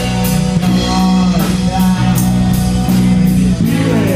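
Live band playing rock: electric guitar, bass and drum kit, with the cymbals and drums keeping a steady beat of about two strokes a second.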